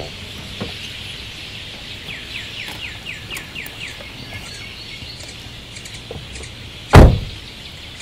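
A bird calling a run of quick downward-sliding chirps over a steady high outdoor hiss, then a single loud thump about seven seconds in: a car door being shut.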